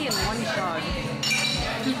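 Glasses clinking a couple of times over people talking in a pub.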